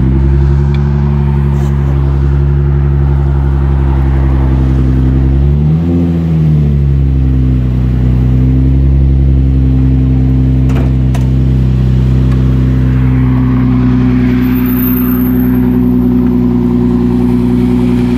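Nissan 350Z's 3.5-litre V6 idling steadily, with one short blip of the throttle about six seconds in.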